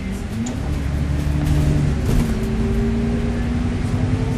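Cummins diesel engine and Voith automatic gearbox of an Alexander Dennis Enviro400 MMC double-decker bus, heard from inside the lower deck while under way. The engine note rises about a third of a second in and changes pitch about two seconds in, as at a gear change.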